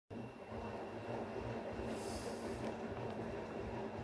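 Steady low background rumble with a faint hum, and a short hiss of higher noise about halfway through.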